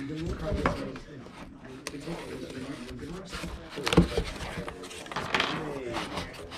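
Cardboard packaging being handled and rubbed, with a few light clicks early on and one loud thump about four seconds in, under quiet background talk.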